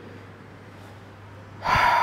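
A man's quick, audible intake of breath, about half a second long, near the end. Before it there is a second and a half of quiet room tone with a low steady hum.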